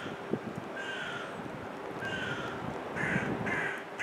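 A bird calling repeatedly: short calls that fall in pitch, about one a second, the last two close together.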